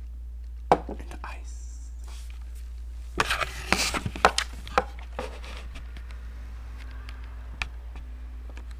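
Handling noise: knocks, clicks and scrapes as a glass of water and the camera are set down on a wooden table, with a cluster of knocks in the middle, over a steady low hum.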